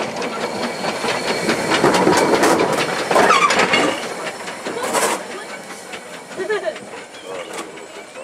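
Industrial saddle-tank steam locomotive passing close by, hissing steam. The hiss is loudest in the first half and fades after about four seconds.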